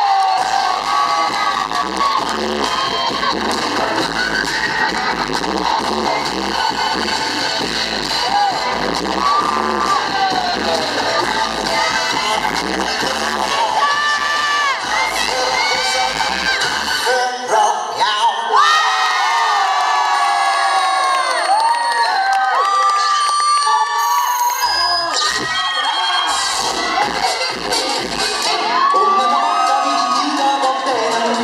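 Loud dance music playing through a hall's sound system, with an audience cheering and whooping along. The bass beat drops out for a few seconds past the middle, then comes back.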